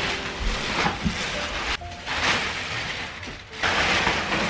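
Plastic wrapping crinkling and rustling in several surges as it is cut and pulled off a memory foam mattress.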